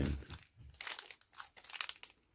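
Wrapper of a baseball card pack crinkling as it is handled and torn open by hand: short, scattered crackles with small gaps between them.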